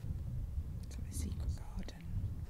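A short, quiet, half-whispered remark over a steady low rumble of wind on the microphone.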